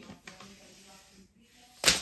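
Faint handling rustles of a tablet in its plastic wrap, then a short, sharp rasp near the end.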